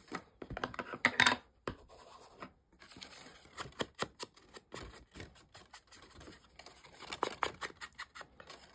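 Hands handling folded patterned card stock and craft tools, including an ink pad and blending tool, on a wooden tabletop: scattered light scratches, rustles and small clicks and taps, the sharpest about a second in.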